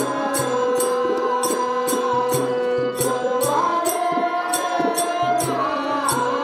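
Live stage-drama accompaniment: a harmonium holds long sustained notes over hand-drum strokes, while small hand cymbals clink steadily about three times a second.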